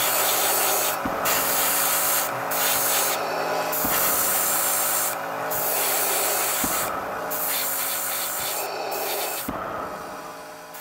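Airbrush spraying paint in long hissing passes, cut off briefly about six times as the trigger is released, over a steady low hum.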